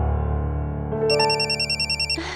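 Electronic mobile phone ringtone, a rapid warbling trill between two pitches, starting about halfway through over a held low music chord.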